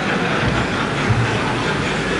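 Audience laughing and clapping after a joke's punchline, a steady wash of crowd noise.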